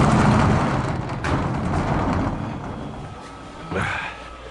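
A loud rushing, rumbling noise that fades over the first two and a half seconds, then the steady hum and thin whine of a high tunnel's small inflation blower fan, running with its air intake not fully opened.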